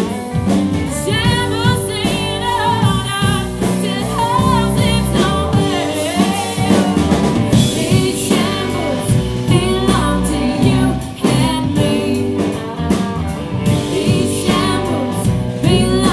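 Live band playing: electric guitars and a drum kit, with a woman singing over them.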